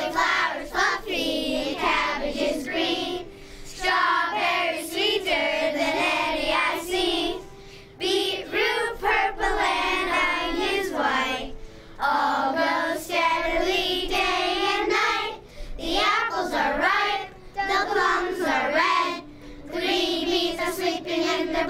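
Children singing a song, in phrases of a few seconds with short pauses between them.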